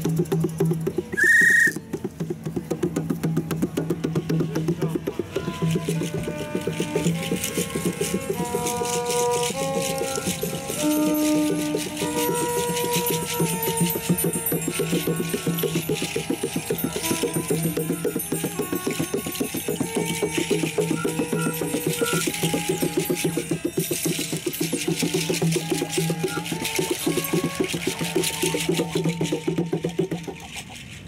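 Free-improvised ensemble music: a violin playing short notes over a steady low drone, with fast, continuous rattling percussion. A short, loud high whistle note sounds about a second and a half in.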